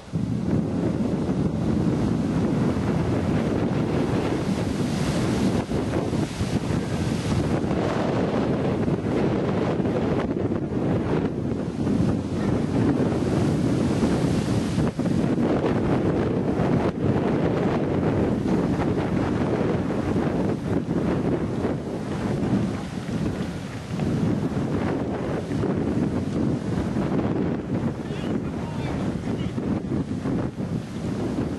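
Wind buffeting the microphone: a steady low rumbling noise that holds at much the same level throughout.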